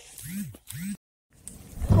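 Two short, quiet vocal sounds from a person, each rising and falling in pitch, then a sudden gap of dead silence at an edit, then a voice saying "Oh" near the end.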